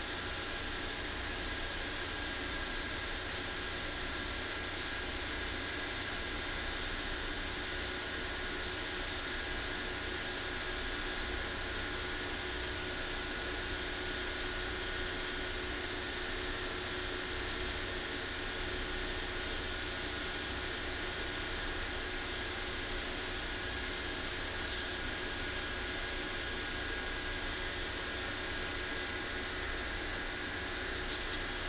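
Steady hiss with a low hum and a few faint steady tones, unchanging throughout: constant machine-like background noise.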